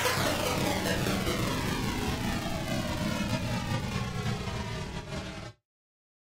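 Closing synthesized noise sweep of an electronic instrumental: a hissing whoosh over a low rumble, its pitch bands sweeping slowly downward as it fades, then cutting off suddenly about five and a half seconds in.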